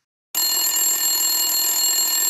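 Telephone bell ringing: one continuous ring that starts abruptly about a third of a second in, with several steady high tones over a rattling haze.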